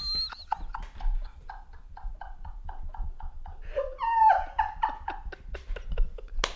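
Two men laughing hard: a long run of rapid breathy bursts, about four a second, with a higher squealing laugh about four seconds in.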